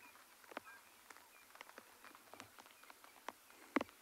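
Light rain: scattered drops ticking irregularly on a nearby surface, one sharper tick a little before the end.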